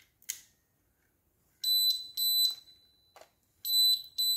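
A click as the water-sensing cable's plug goes into a YoLink leak sensor, then the leak alarm sounding: high-pitched beeps in groups of three, the group repeating about two seconds later. The alarm signals that the wet probe is detecting water.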